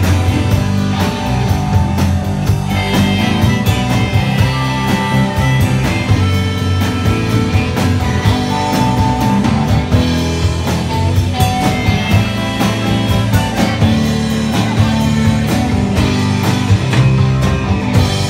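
Live rock band playing an instrumental passage, with electric guitar lines over strummed acoustic guitar, bass guitar and a steady drum beat.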